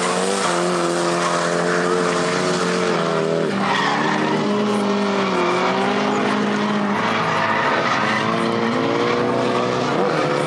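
A drift car's engine revving hard, its note rising and falling several times, over continuous tyre skidding and squeal as the car slides sideways with the rear tyres spinning and smoking.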